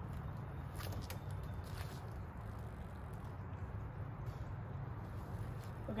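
Faint outdoor background: a steady low rumble with a few soft ticks, after a thrown disc has left the hand.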